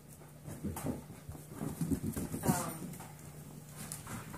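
Young golden retriever mix puppies playing, with short puppy yips and one higher whining yelp about two and a half seconds in, over scattered light thumps and scuffles of paws and bodies.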